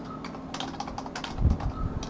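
Typing on a computer keyboard: a quick run of key clicks, with one heavier dull thump about a second and a half in.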